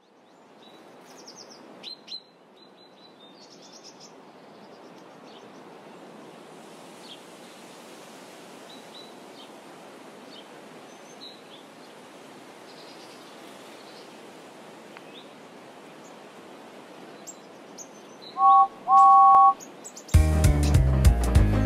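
Outdoor ambience with birds chirping over a steady hiss. Near the end a two-note engine whistle sounds twice, a short blast then a longer one.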